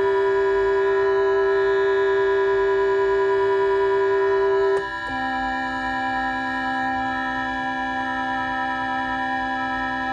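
Steady electronic organ-like tones from an opened Omnichord OM-84 sounding together with a held reference note on an electronic keyboard, while the Omnichord is trimmed into tune by ear. About halfway through there is a click and the sustained tones change to a lower set of notes.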